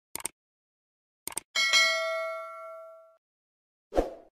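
Subscribe-button animation sound effects: two quick clicks, another pair of clicks just over a second in, then a bright notification-bell ding that rings out and fades over about a second and a half.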